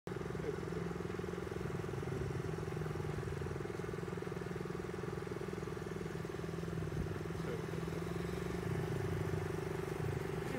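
Small single-cylinder four-stroke engines of a Honda CT90 trail bike and a Honda CRF50 minibike running steadily at low, even cruising speed, with no revving.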